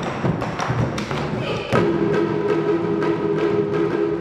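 Large Chinese barrel drums struck with wooden sticks in a quick, steady rhythm. About two seconds in, a sustained pitched note joins the drumming.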